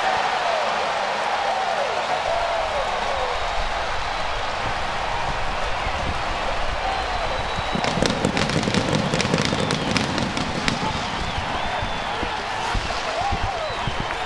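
Ballpark crowd cheering a walk-off win, a steady roar of voices with scattered clapping that picks up about eight seconds in.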